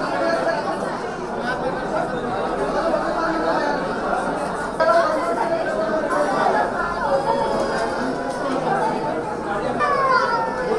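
Many people talking at once: overlapping crowd chatter of guests mingling, with a sudden jump in loudness about halfway through.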